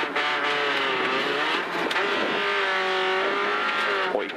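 Renault Clio V1600 rally car's 1.6-litre engine running hard, heard from inside the cabin. The engine note dips briefly near the start and again about two seconds in, then holds steady.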